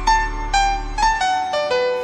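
Keyboard playing the instrumental lead-in to a sung jingle: a run of single notes stepping downward over a held bass note that fades out about halfway through.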